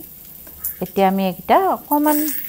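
Oil sizzling in a frying pan as boiled chicken salami rolls are shallow-fried, with a steady high hiss.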